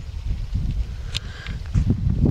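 Uneven low rumble of wind buffeting the microphone outdoors, with a single short click about a second in.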